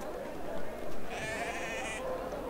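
A single bleat from a sheep-like animal, one wavering high call in the second half, over a low background murmur.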